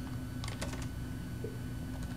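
Computer keyboard keys typed in a quick run of about five clicks about half a second in, over a steady low hum.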